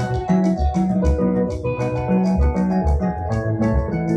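Band music: electronic keyboards playing chords over a moving bass guitar line, with a steady beat of quick high ticks.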